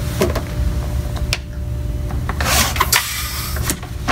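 Electric balloon inflator running with a steady hum as it fills a latex twisting balloon about half full; the motor stops a little over two seconds in. A short hiss and a few light clicks of the latex being handled follow.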